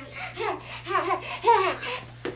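Toddler laughter: a string of short, high-pitched laughing bursts, the loudest about a second and a half in.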